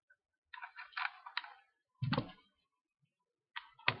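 Small clicks and scrapes of a rebuildable atomizer deck and its coil leads being handled on an ohm tester: a cluster of clicks in the first second and a half, a single louder knock about two seconds in, and more clicks near the end.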